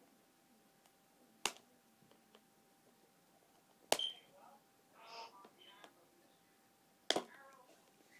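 Three sharp plastic clicks a few seconds apart, with soft scratching and rustling after the second and third, from fingernails picking at and peeling a stuck label off a plastic DVD case.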